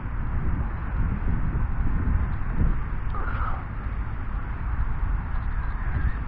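Wind buffeting the microphone: an uneven low rumble and rushing noise, with a short faint higher sound about three seconds in.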